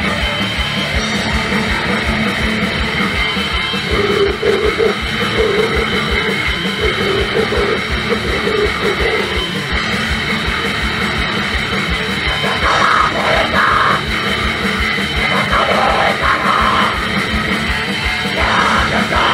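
Grindcore band playing live: distorted electric guitars over a fast, dense drum-kit beat with rapid kick-drum strokes, loud and steady throughout.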